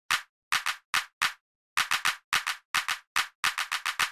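Intro music opening on sharp, dry percussive hits: a few spaced apart at first, then quickening into a fast run of hits by the end.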